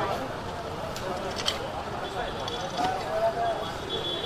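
Indistinct voices of people talking in the background, with one sharp knock about one and a half seconds in and a faint steady high tone for part of the time.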